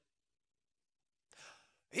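Near silence for over a second, then a man's short, audible in-breath about halfway through, just before he starts speaking again at the very end.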